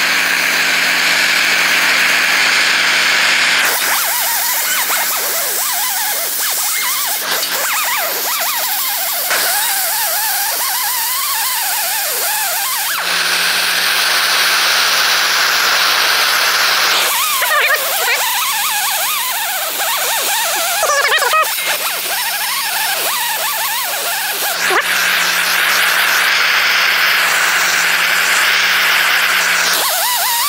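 A torch flame hissing as it heats steel sheet, taking turns with a die grinder spinning a brass wire wheel against the hot metal, its whine rising and falling as it is pressed on. The torch runs at the start, again about the middle, and again near the end, with the wire wheel in between.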